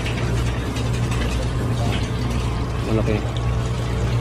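Water splashing and bubbling in live-seafood holding tanks over a steady low machine hum from their circulation pumps. A brief voice is heard about three seconds in.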